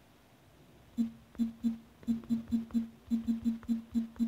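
Key-press sounds from a tablet's on-screen keyboard as a short phrase is typed. After about a second of quiet, a dozen quick, identical short clicks come at about four to five a second.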